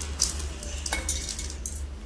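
Ingredients tipped off a steel plate into a steel mixer-grinder jar: soft scraping with a few light metallic clinks, one ringing briefly about a second in, over a steady low hum.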